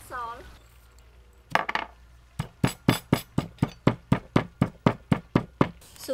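Stone pestle pounding in a stone mortar, crushing salt into the pepper-sauce ingredients: a few quick strikes, then a steady run of sharp knocks at about four a second.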